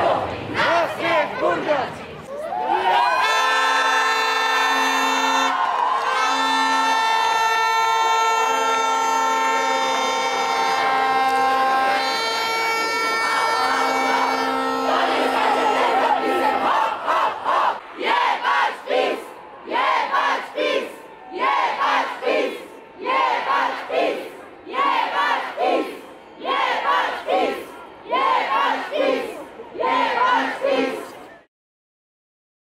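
A protest crowd shouting, then a long, loud blare of horns sounding several steady pitches at once, broken into stretches, with one tone sweeping down and back up. After that the crowd chants a slogan in a steady rhythm, about one shout a second.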